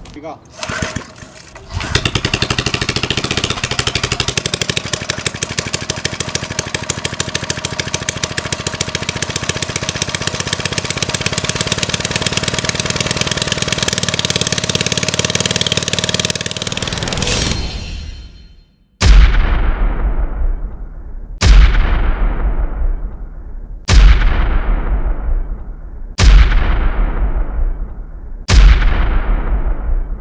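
A single-cylinder Briggs & Stratton engine with a clear plexiglass head, running on RC model fuel, cranks briefly and catches about two seconds in. It then runs fast and steady for about fifteen seconds before fading out and dying, which the owner puts down to the carburetor needle not being opened far enough. Near the end comes a string of deep booms about two seconds apart, each tailing off.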